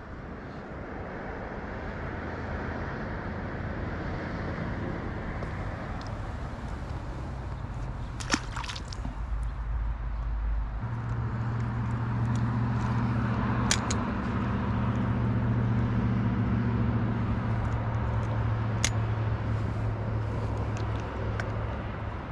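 Steady outdoor noise with a low motor hum that comes in about halfway and fades near the end, and a few sharp clicks.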